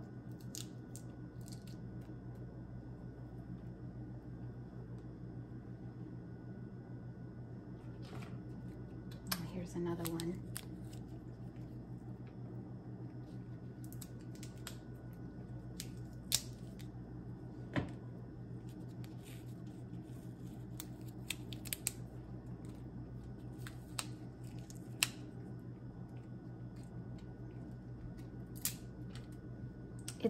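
Roasted chestnut shells being peeled by hand, giving irregular sharp cracks and snaps as the scored shells are pulled back and broken, over a steady low hum. A brief murmured voice about ten seconds in.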